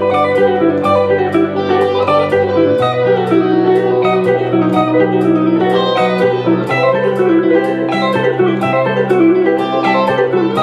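Fast electric guitar arpeggio runs played as a busy background texture, harmonized up a third by a second guitar line, over sustained low chords that change about three seconds in.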